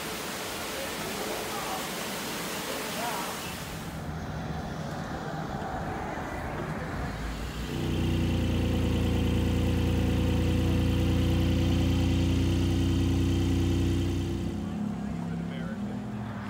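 A steady hiss for the first few seconds, then a car engine running steadily, a loud even low hum that comes in about halfway through and eases off a couple of seconds before the end.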